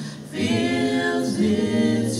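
Small gospel choir of mostly women's voices singing unaccompanied in held chords; a short breath between phrases, then the voices come back in about half a second in and move to a new chord partway through.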